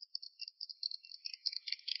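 A small group of people clapping, sparse and irregular at first and growing denser about halfway through.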